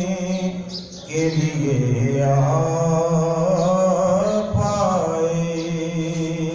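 A man's voice reciting a naat, a devotional poem in praise of the Prophet, in a melodic chant that holds long, wavering notes. It breaks briefly about a second in, then carries on into the next line.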